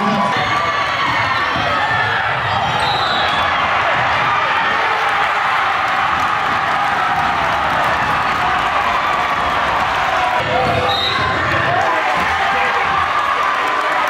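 Gymnasium crowd at a basketball game talking and shouting steadily, with a basketball bouncing on the hardwood court and a couple of short high squeaks.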